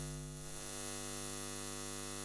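Neon-sign hum sound effect: a steady electrical buzz with a dense stack of overtones.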